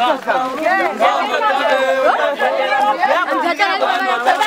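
Crowd of many voices talking and calling out over one another, loud and close.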